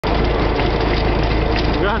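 Engine of a Russian-built log-transport truck running as the truck drives, a steady loud drone with a constant low hum underneath.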